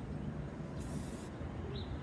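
Aerosol spray paint can hissing in one short burst of about half a second, over a steady low background rumble.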